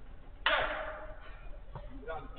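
A football hitting the pitch's perimeter about half a second in: one sudden strike whose ringing dies away over about a second.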